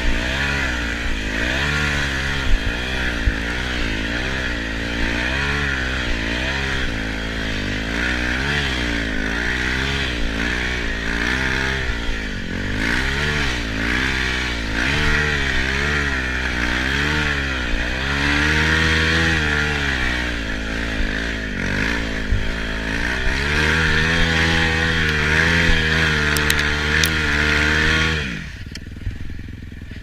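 Dirt bike engine running under the rider, its pitch rising and falling again and again as the throttle is opened and closed. The engine sound stops suddenly near the end.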